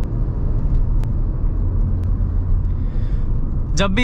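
Steady low rumble of road and engine noise inside a Maruti Suzuki Brezza's cabin while it cruises at highway speed.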